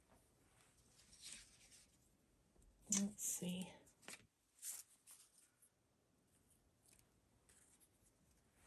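Thin plastic stencils being handled and laid down on a gelli plate, giving scattered faint rustles and light taps. A brief vocal sound of two short syllables, about three seconds in, is the loudest thing.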